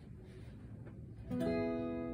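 A guitar chord strummed once just over a second in and left ringing. Before it, only a faint low rumble.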